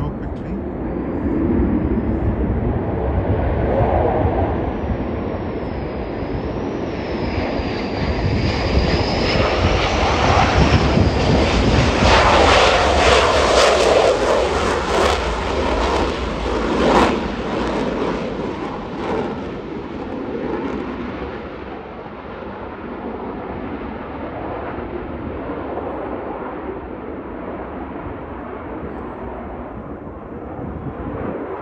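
Navy EA-18G Growler's twin jet engines passing on a touch-and-go. A high whine wavers over the roar early on, the noise builds to its loudest around the middle as the jet climbs away, then slowly fades to a distant rumble.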